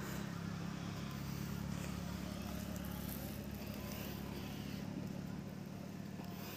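Steady low hum of an engine or motor running, even throughout.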